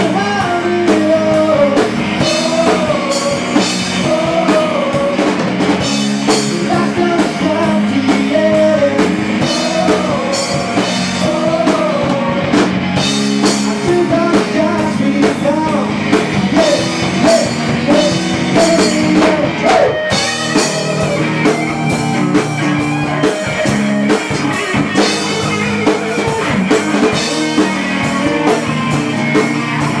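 Live rock band: a male singer singing into a microphone over electric guitar and drums. The vocal line fades out about two-thirds of the way through while the band plays on.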